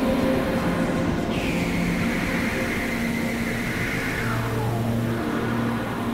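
Experimental electronic noise music: a dense, steady wash of synthesized noise over held low drone tones. A high tone swoops down about a second in, holds, then slides lower after about four seconds.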